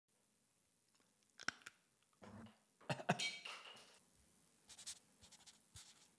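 Faint, scattered clicks and rustles of a person moving close to a microphone. The loudest are a pair of sharp clicks about three seconds in, followed by a brief scratchy noise.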